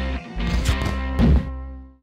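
Short intro music sting with a deep held bass tone and a few sharp percussive hits, fading out near the end.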